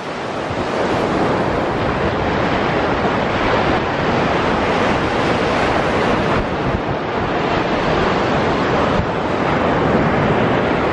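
Ocean surf washing on the beach, mixed with wind buffeting the microphone: a loud, steady rush.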